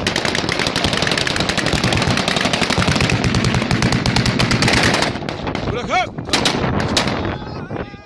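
Sustained automatic gunfire, shots coming so fast they run together for about five seconds, then a brief shout and a few separate shots.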